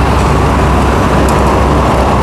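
Hitachi EX15-1 mini excavator's diesel engine running steadily under load while the boom and arm are worked hydraulically.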